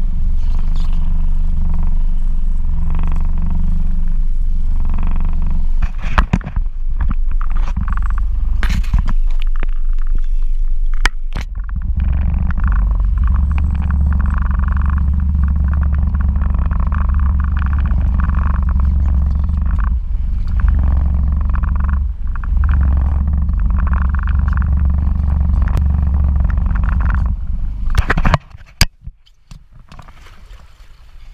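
Wind buffeting the camera microphone on an open boat: a steady, heavy low rumble with a few sharp handling knocks, dropping away suddenly near the end.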